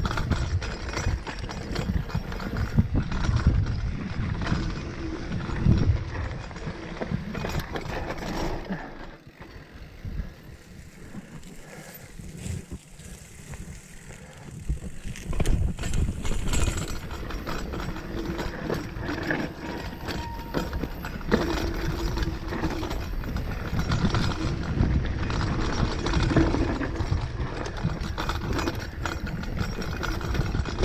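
Mountain bike riding down a dirt forest trail: a constant rattle and clatter of the bike over roots and stones, with tyre rumble. It quietens for several seconds in the middle, then grows loud again.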